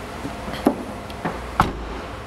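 Hatchback tailgate being pulled down and shut: a few light knocks and clicks, then a heavier thud about one and a half seconds in as it closes.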